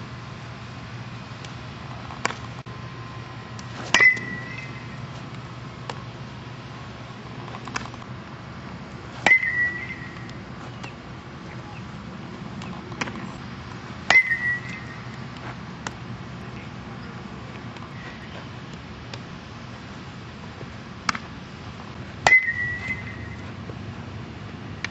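A metal baseball bat striking ground balls four times, each hit a sharp ping with a brief ringing tail, roughly five seconds apart during an infield fielding drill. Fainter knocks fall between the hits, over a steady low hum.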